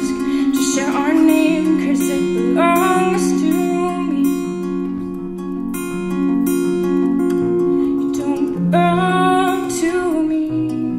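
Acoustic guitar playing a steady, repeating pattern of plucked notes, with a woman singing over it for the first few seconds and again near the end.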